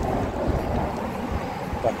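Wind buffeting a phone's microphone while cycling, a low, gusty rumble.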